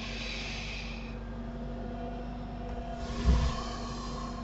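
Steady low electrical hum and background noise, with a soft hiss near the start and again near the end, and a single low thump a little after three seconds in.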